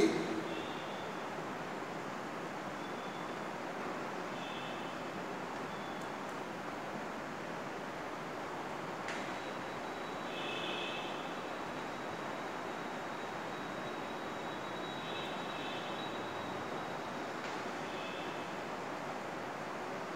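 Steady background hiss of room noise, with a few faint, brief high-pitched chirps scattered through it, the clearest about ten seconds in.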